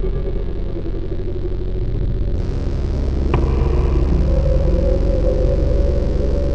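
A loud, steady low rumbling drone with a few sustained tones above it, and a sharp click a little past the middle.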